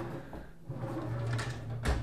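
A bathroom vanity drawer sliding on its runners and pushed shut, closing with a single sharp knock near the end: it is not a soft-close drawer.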